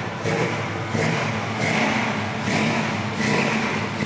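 The 454 big-block V8 of a 1964 Chevy C10 pickup running, heard from inside the cab. Its sound swells and eases in a steady rhythm, about every three-quarters of a second.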